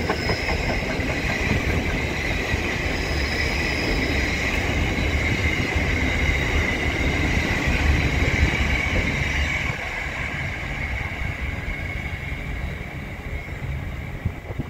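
Container freight train wagons rolling past on the rails: a steady rumble of wheels with a constant high-pitched tone over it. It drops in level about ten seconds in and again near the end as the last wagons pass.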